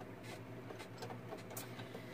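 Quiet room tone with a steady low hum and a few faint clicks from a plastic embossing folder being handled.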